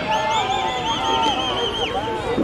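Lap bell rung by hand, ringing rapidly at about five strokes a second and stopping just before the end, to signal the final lap of a 500 m sprint heat, with crowd voices underneath.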